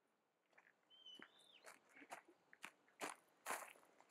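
Footsteps crunching on a gravel path at a walking pace, faint at first and growing louder from about halfway through. A short whistled bird call comes about a second in.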